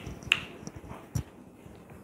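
A few short clicks and a soft knock from a person moving about and leaving, the two clearest about a quarter second and just over a second in, with fainter ticks between.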